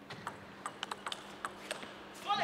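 Light, sharp clicks of a celluloid table tennis ball, about nine in two seconds at uneven spacing.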